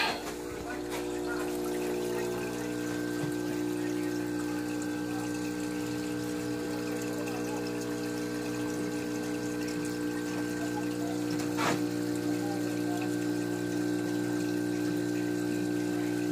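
Aquarium pumps and filters running: a steady hum of several tones with water trickling under it, and one brief click partway through.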